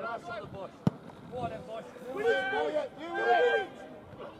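Voices shouting calls across a football pitch, loudest in the second half, with a single sharp thud of a football being kicked just under a second in.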